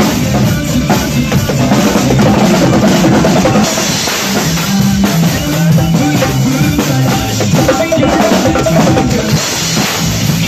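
Acoustic drum kit played in a steady rock groove, bass drum, snare and cymbals, over a recorded backing track with a bass line.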